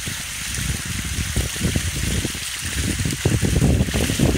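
Fountain water pouring over the rim of a large bowl-shaped basin and splashing into a shallow pool, a steady hissing splash. Low rumbling underneath grows louder in the last second.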